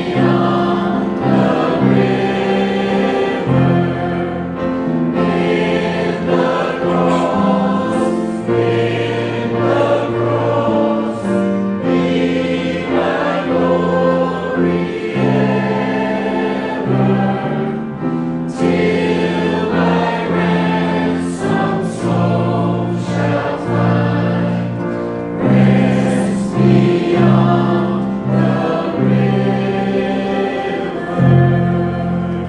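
Church choir of men and women singing a hymn together, with steady held low accompanying notes beneath the voices.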